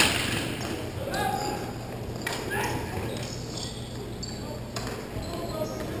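Hockey game in play: a sharp knock right at the start from an impact near the goal, then players' short shouts echoing in a large hall.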